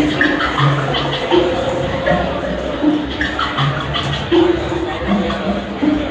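Live electronic music from a sampler and looper: a repeating pattern of short pitched notes over a steady low backing.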